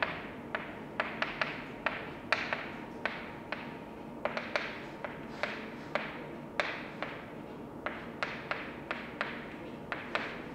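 Chalk writing on a blackboard: an irregular run of sharp taps and short strokes, about two or three a second.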